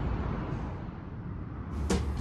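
Steady low rumble of outdoor background noise, with music starting near the end.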